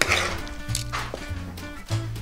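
A metal ladle scraping and knocking in a metal baking tray as a vegetable stew is served onto a plate, with a few sharp clinks, over soft background music.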